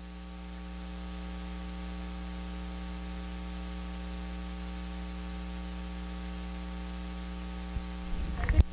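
Steady electrical mains hum with a stack of overtones and a hiss underneath, picked up through the microphone and sound system while nobody speaks. It grows a little louder over the first second and then holds steady.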